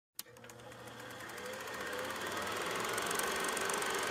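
Rhythmic mechanical clatter of a film projector over hiss. It starts with a click and grows steadily louder.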